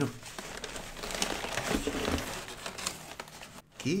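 Brown kraft packing paper crumpling and rustling as hands dig a boxed puzzle out of a cardboard shipping box, a dense run of crackles.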